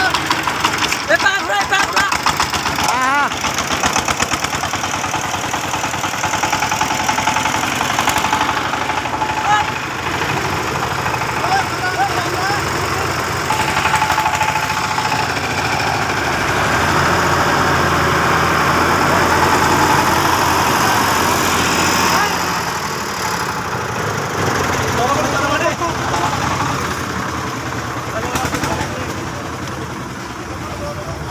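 Single-cylinder diesel engine of a two-wheel power tiller running steadily as it hauls a trolley loaded with straw, with people's voices over it; the engine gets a little louder for a few seconds past the middle.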